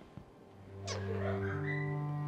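Dramatic background score coming in: low sustained bowed-string notes start under a high falling swoop about a second in, followed by a short wavering high cry.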